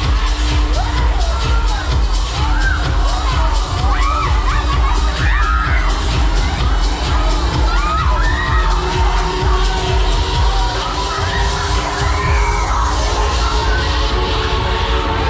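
Riders on a spinning Break Dance fairground ride screaming and shouting, many overlapping cries, over loud ride music with a heavy bass beat.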